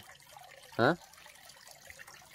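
Small garden pond fountain and stone waterfall trickling steadily and faintly. About a second in, a person gives one short voice sound that rises in pitch.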